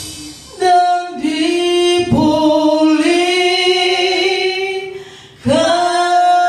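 A woman singing an Indonesian gospel song into a microphone, almost unaccompanied: three long held phrases, starting about half a second in, about two seconds in and near the end, with the keyboard's bass dropped out.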